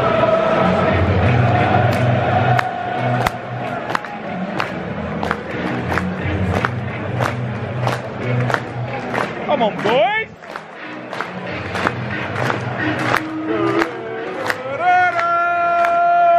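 Stadium PA music with a steady beat about twice a second over a large crowd, with a long held note at the start, a rising sweep about ten seconds in, and another long held note near the end.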